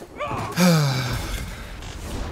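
A man sighs: one breathy, voiced exhale whose pitch slides downward, loudest just over half a second in.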